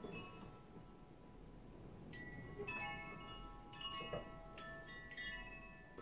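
Chimes ringing softly: clusters of several bright metallic tones struck at irregular moments, about two, three, four and five seconds in, each left to ring on.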